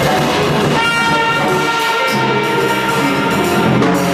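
Live jazz band playing: brass horns hold long, steady notes over drums and cymbals.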